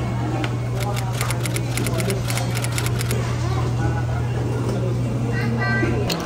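Busy fast-food restaurant ambience: indistinct background chatter, with frequent small clicks and clatter over a steady low hum.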